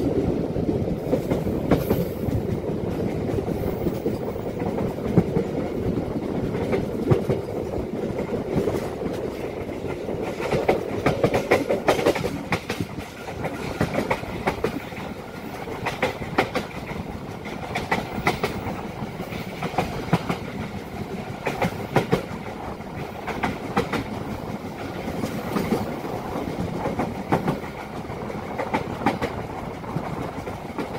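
Tawang Jaya Premium passenger train running along the track: a steady rolling rumble with frequent sharp clacks of the wheels over the rail joints, coming in irregular clusters.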